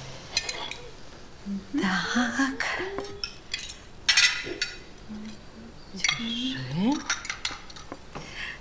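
A spoon clinking against a glass dessert bowl and china plates being set down on a table, in a string of sharp clinks that are loudest about two and four seconds in. A few short hums from a voice come between them.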